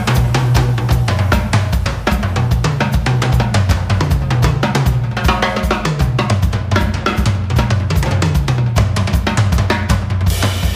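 Jazz drum kit played fast and busy, with bass drum, snare rimshots and cymbals, over a walking electric bass line.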